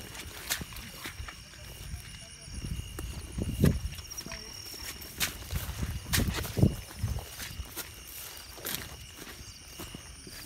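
Footsteps and rustling through rice-field vegetation, with irregular soft thumps and crunches, the loudest about a third of the way in and again about two-thirds in. Under them is a steady high chirring of night insects.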